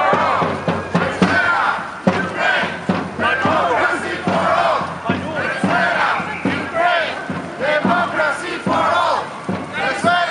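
A crowd of marching protesters shouting, many voices overlapping and loud throughout.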